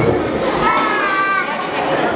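Children's voices and chatter in a large hall, with one child's high-pitched drawn-out call starting about half a second in and lasting nearly a second.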